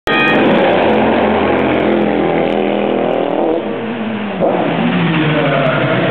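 Race car engines passing: one runs by with its pitch slowly falling away, and a second comes up loudly about four and a half seconds in.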